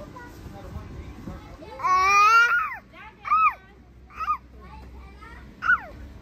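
A young child's high-pitched wordless calls: one long call about two seconds in that rises slightly and then falls, followed by three short calls about a second apart.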